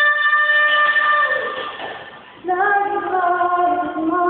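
A young man singing in a high voice into a handheld microphone, unaccompanied. He holds one long note that falls away and fades about two seconds in, then starts a new, lower phrase after a short breath.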